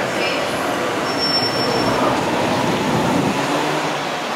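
Black Range Rover SUV pulling away slowly, a steady low engine and tyre noise, with a brief faint high squeal a little over a second in.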